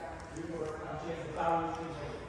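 A man's voice speaking, the words not clear, loudest about one and a half seconds in.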